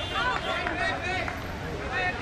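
Indistinct voices of several players calling out across an outdoor cricket field, overlapping with no clear words.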